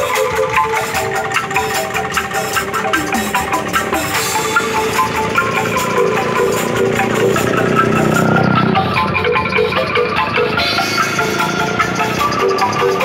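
Street angklung ensemble playing: shaken bamboo angklung and mallet-struck xylophone keys in a quick, repeating melodic pattern, with drum-kit percussion. A low swelling sound rises under the music in the middle and fades.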